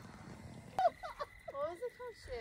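Quiet for the first moment, then a person's voice in short, high-pitched snatches of speech or laughter from about a second in.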